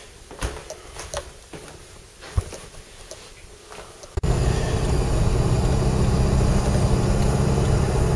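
A few light clicks and knocks in a quiet room, then an abrupt cut about halfway to a car's engine running steadily, heard from inside the cabin as a low, even hum.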